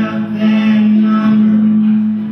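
Live acoustic folk song: a singer holds one long, steady note over acoustic guitar.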